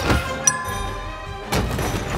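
Film score music under fight sound effects: a heavy thud at the start, a sharp crack about half a second in, and another loud hit about a second and a half in.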